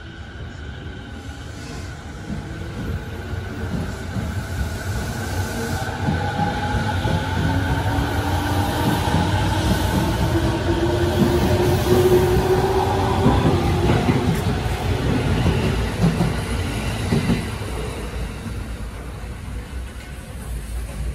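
JR 209 series electric train pulling away from the platform, its traction motors whining in several tones that rise slowly in pitch as it accelerates, over the rumble of its wheels on the rails. It grows loud as the cars pass close by, then fades.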